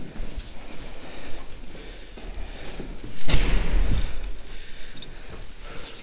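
Rustling and handling noise, with one heavy, low thump about three seconds in that dies away over nearly a second.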